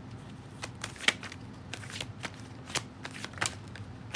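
A deck of Rider-Waite tarot cards being shuffled by hand: an irregular scatter of soft card flicks and snaps, the sharpest about a second in.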